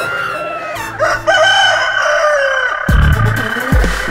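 A rooster crowing in a break of a dub track. The bass and beat drop away while the long crow sounds, and the beat kicks back in about three seconds in.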